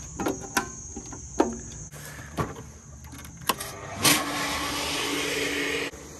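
A few clicks from the switch box, then about four seconds in an electric pump for the sprinkler system starts with a jolt and runs steadily with a hum and a hiss.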